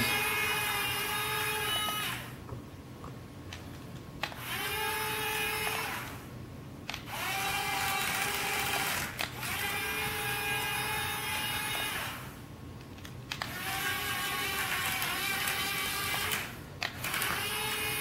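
The electric track-drive motors of a homemade RC Johnny 5 robot whine as it is driven in spurts. Each run lasts about two to four seconds and there are short pauses between runs.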